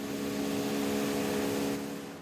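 Motorboat engine running steadily at speed, a drone over the rush of water and wind, dropping away near the end.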